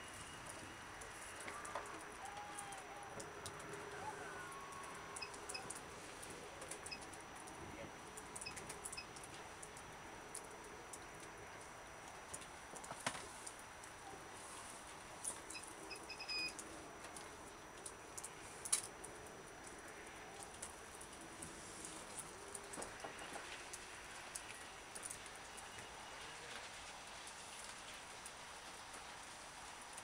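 Faint outdoor ambience: a low murmur of distant voices with a few short bird chirps in the first few seconds, and a few sharp clicks, the loudest about two-thirds of the way in.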